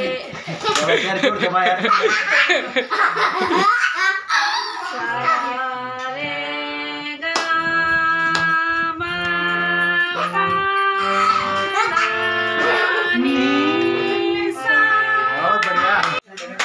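Indian hand-pumped harmonium played with a slow tune of held, reedy notes over lower sustained notes, starting a few seconds in after laughter.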